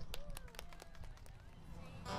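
A lull between songs, with faint voices and a few scattered light clicks, irregularly spaced.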